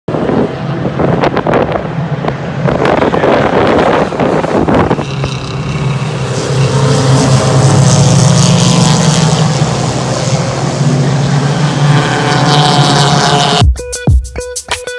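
Race car engines running on the track, with wind gusting on the microphone over the first five seconds. From about five seconds in, one engine note holds steady, then cuts off suddenly just before the end as music begins.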